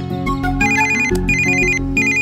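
Mobile phone ringtone: an electronic trilling ring in repeated bursts of about half a second with short gaps, starting about half a second in, over background film music.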